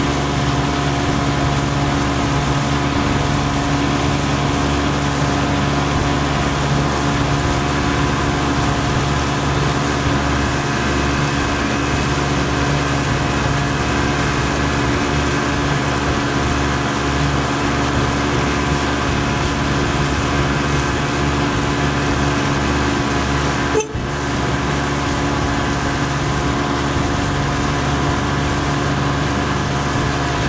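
A boat's motor running steadily at cruising speed, heard from on board as an even drone. There is a brief dip in the sound about three-quarters of the way through.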